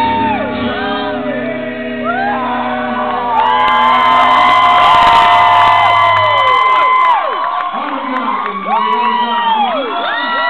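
Live acoustic rock song ending: a long held sung note over the band's final chord, which stops about seven seconds in, then audience cheering and whooping.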